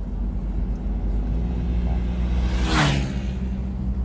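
Car driving on a paved road, heard from inside the cabin: a steady low engine and road rumble. About three seconds in, a brief whoosh with a falling tone passes.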